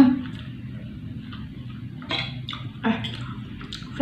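Metal fork and spoon clicking and scraping on a glass plate as spaghetti is twirled. Short approving hums and murmurs come from the eater right at the start and again about two seconds in.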